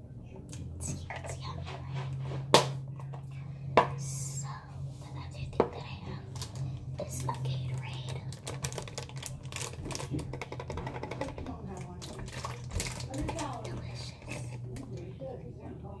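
Close-up handling sounds: taps and sharp clicks, the three loudest within the first six seconds, then a plastic sports-drink bottle handled, its cap taken off and a drink taken from it near the end. A steady low hum runs underneath.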